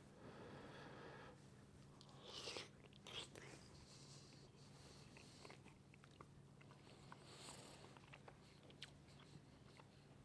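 Near silence: a man quietly chewing a mouthful of baked lasagna, with a few faint soft clicks, over a faint steady room hum.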